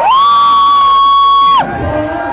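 Loud, steady synthesizer note from the club sound system, sliding up into pitch, held for about a second and a half, then dropping away, with crowd noise under it.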